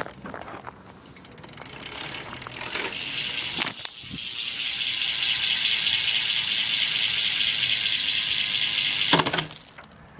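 Eastern Directional rear hub on a BMX freewheeling as the rear wheel spins, its pawl clicks running together into a high-pitched buzz. It builds over the first few seconds, breaks briefly about four seconds in, holds steady, then cuts off suddenly near the end.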